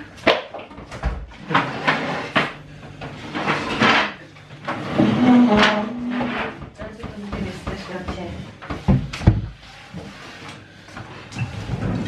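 A laugh, then indistinct voices in a small room, with scattered knocks and bumps, a cluster of sharp ones about three-quarters of the way through.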